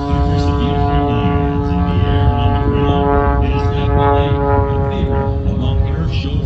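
Aerobatic biplane's piston engine and propeller running at a steady pitch during a climb, heard from the ground as a constant drone.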